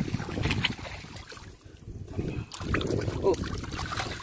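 Irregular splashing and sloshing in shallow floodwater, with wind on the microphone. The sound eases off in the middle and picks up again.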